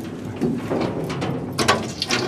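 Light rubbing and a few sharp metallic clicks, a little past the middle, as a hand moves over the gears and shafts inside an old crane's swing-gear housing.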